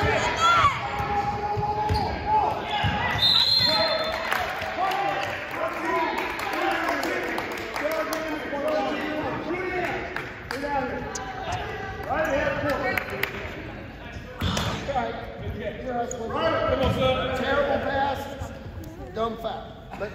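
A basketball being dribbled on a hardwood gym floor, with indistinct shouting voices echoing in the gymnasium.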